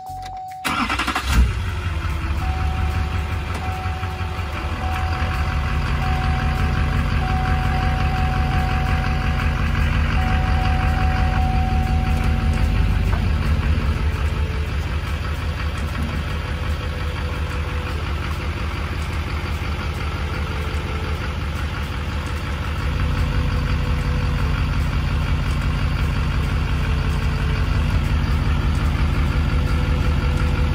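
A pickup truck's engine cranks and catches about a second and a half in, then idles steadily, getting a little louder later on. A single-tone dashboard warning chime repeats at the start and stops about 13 seconds in.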